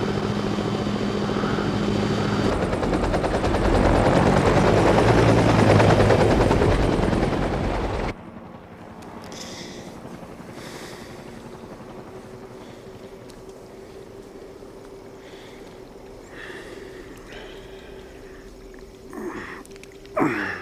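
Helicopter rotor and turbine noise, swelling louder for several seconds and then cut off suddenly about eight seconds in, leaving a faint steady hum. A short breath is heard near the end.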